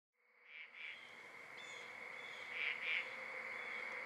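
Faint animal chirping: a steady high tone with short chirps in pairs, one pair about every two seconds, slowly growing louder.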